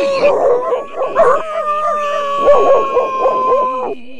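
A cartoon coyote singing in a long, howling voice, sounding like a hound dog: one held, slightly wavering note, then after a short break about a second and a half in, a second long held note that cuts off just before the end.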